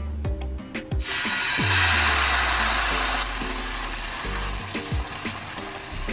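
Broth-and-oil-dipped tortillas sizzling on a hot flat-top griddle (comal): the sizzle starts suddenly about a second in as a tortilla is laid down, is loudest for the next couple of seconds, then settles to a fainter steady sizzle. Background music with a low bass line plays under it.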